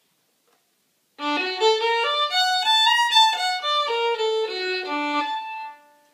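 Solo fiddle bowing a jazz-style lick built on an augmented arpeggio with an extra note added. It starts about a second in: a quick run of separate notes that climbs and comes back down, ending on a held note.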